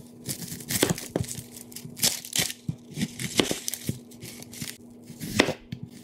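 A chef's knife cutting through a whole onion on a wooden cutting board while its dry papery skin is torn off: irregular crunching cuts and crackly tearing, loudest about two seconds in and again near the end.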